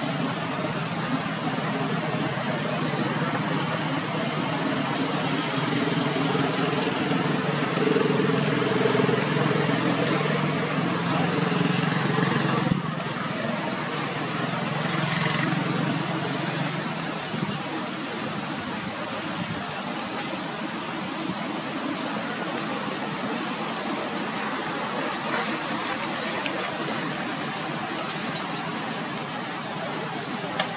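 Outdoor background noise with a low engine drone, like a vehicle passing, that swells in the middle and fades out, with indistinct voices.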